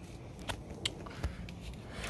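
Faint handling noise: a few soft, short clicks and rustles over a low background rumble.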